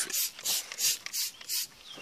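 Trigger spray bottle of Mothers foaming wheel and tire cleaner being pumped over and over, squirting onto a tire and wheel in quick hissing spurts, about three a second.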